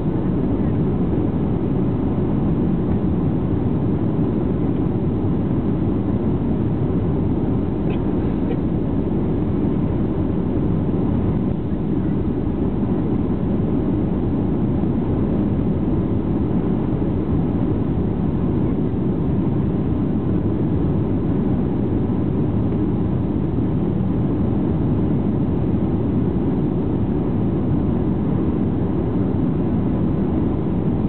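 Steady cabin noise of a Boeing 737-700 airliner descending on approach, heard from inside the passenger cabin: an even, low rush of engines and airflow that does not change.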